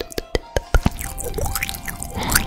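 Wet mouth clicks and pops made close to a microphone: a quick run of sharp clicks in the first second gives way to softer, wetter mouth sounds. Background music with held tones runs underneath.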